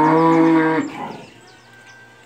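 A black-and-white cow mooing once, a long low call that fades out about a second in.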